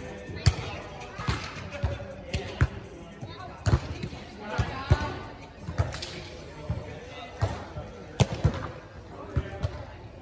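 A volleyball being struck by players' hands and forearms during a rally: an irregular string of sharp smacks, with voices calling between them.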